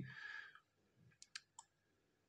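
Near silence broken by three or four faint, sharp computer-mouse clicks a little over a second in.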